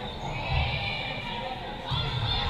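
Players and spectators calling out with high-pitched voices in a gymnasium during a volleyball rally, with a dull thud about half a second in and another sharp hit near the end.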